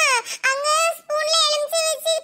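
A high-pitched, sped-up cartoon character voice in long held and falling tones, with short breaks between them.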